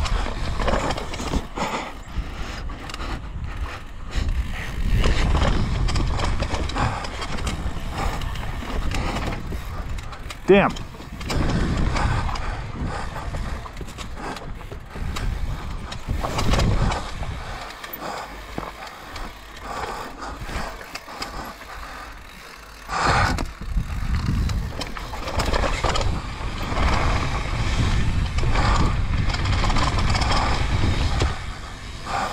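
Downhill mountain bike rolling over rock and dirt: a steady rush of tyre and trail noise with the chain and frame rattling and frequent knocks from impacts. One especially sharp, loud knock about ten seconds in.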